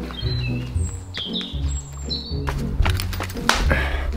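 Background music with a steady bass line, with birds chirping over it during the first couple of seconds.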